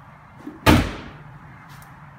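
Trunk lid of a 2006 Acura TL slammed shut by hand: a small knock, then one loud slam about two-thirds of a second in that dies away quickly.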